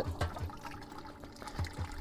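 Faint water trickling and pouring at the opening of a buried rain tank, where a small submersible sump pump sits in the water.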